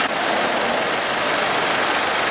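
Mitsubishi Pajero Full's 3.2 four-cylinder turbodiesel idling steadily. It runs smoothly after its intake system and EGR valve have been cleaned of carbon.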